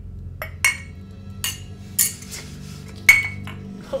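Drinking glasses clinking together in a toast: about six sharp clinks, each with a short ring.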